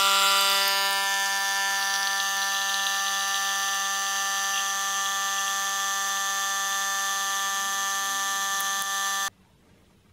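Coffee machine's pump running with a steady buzzing hum while coffee is dispensed into a mug, then cutting off suddenly about nine seconds in.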